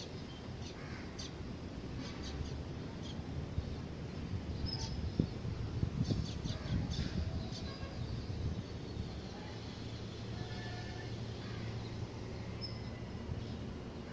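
Outdoor background ambience: small birds chirping now and then over a low, steady rumble, with a low hum joining for a few seconds in the second half.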